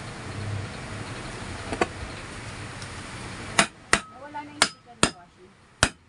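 Hammer tapping on a ceiling fan motor during assembly: about five sharp taps in the second half, some with a brief metallic ring.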